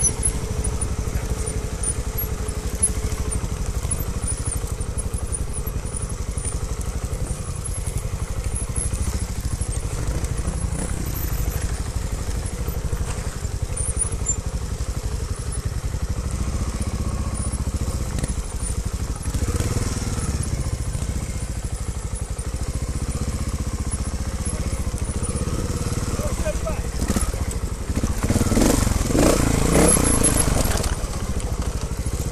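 Trials motorcycle engine running at low speed, heard close up from the rider's own bike, with a louder burst of sound about two seconds before the end.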